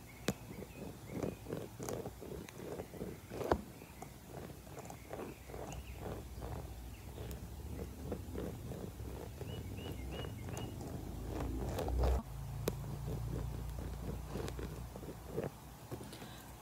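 Fingertips rubbing and brushing close to the microphone in soft, uneven strokes, with a couple of sharp clicks in the first few seconds. A dull handling rumble swells around three quarters of the way through. These are ASMR personal-attention sounds of product being worked over the face.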